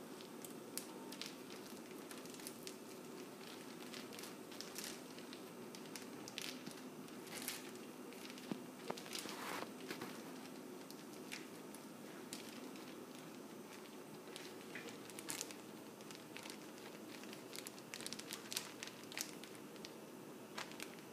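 Plastic zip-top bag crinkling faintly in irregular bursts as it is handled and rubbed from the outside to knead a cornstarch, water and oil mixture inside.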